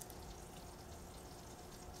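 Faint, steady background hiss with a faint hum, low room tone.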